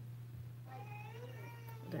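A cat meowing once, a drawn-out call of about a second that starts a little before the middle, over a steady low hum.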